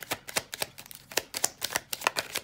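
A deck of cards being shuffled by hand: a quick, irregular run of crisp card clicks, several a second.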